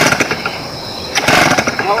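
A chainsaw's recoil starter cord is pulled twice, about a second apart, each pull a short rasping burst, and the two-stroke engine does not catch. The saw has not been run for a long time.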